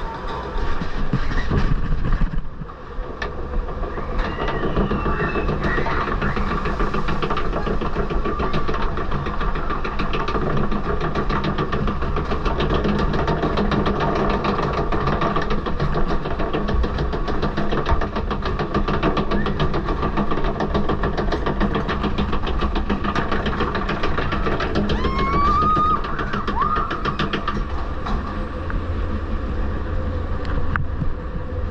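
Log flume boat being hauled up the lift hill: the lift conveyor clicks in a fast, even rhythm over a steady low rumble.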